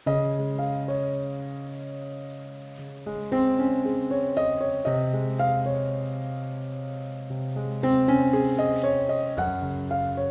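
Calm background piano music: a slow melody over held low notes.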